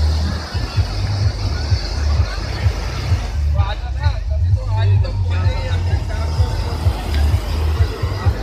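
Wind buffeting the phone microphone in a gusting low rumble over the steady wash of surf on a beach, with voices briefly heard in the middle.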